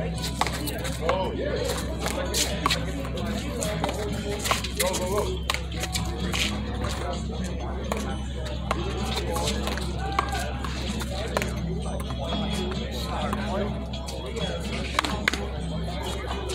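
Sharp smacks of a small rubber handball, struck by gloved hands and hitting a concrete wall and the court at irregular intervals. Background music and people talking run underneath.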